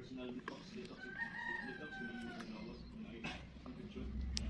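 A rooster crowing: one long drawn-out call starting about a second in, dipping slightly in pitch as it ends.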